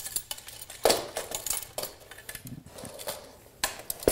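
Metal tubes of a collapsible reflector panel frame knocking and clicking as the frame is handled and its clamps are snapped on, with the loudest knock about a second in.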